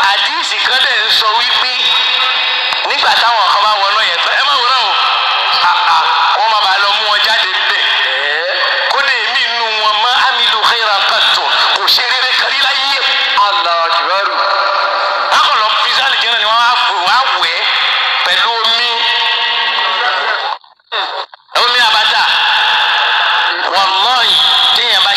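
A voice talking steadily, with a thin, radio-like sound. The sound cuts out suddenly for about a second near the end.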